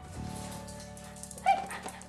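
A dog gives one short, sharp bark about one and a half seconds in, over steady background music.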